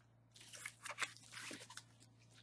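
Cardboard box packaging and bubble wrap being handled and pulled apart by hand, giving a quick, irregular run of small crinkles and crackles that starts about half a second in.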